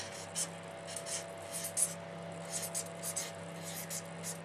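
Handwriting with a pen: short strokes at irregular intervals, over a steady low electrical hum.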